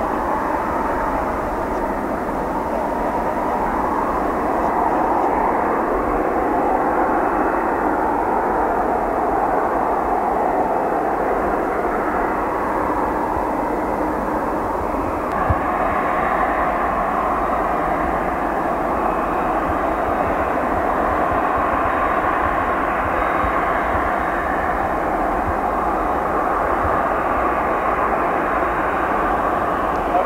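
Embraer ERJ-190's GE CF34 turbofan engines running steadily at low power.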